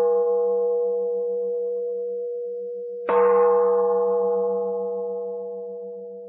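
A struck bowl bell, like a Buddhist singing bowl, rings. One stroke is still fading as the sound begins and a second stroke comes about three seconds in. Each rings with a long, slow decay over a low, pulsing hum.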